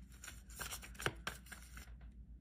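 A deck of tarot cards shuffled by hand: faint sliding of cards with a handful of soft, irregular card snaps.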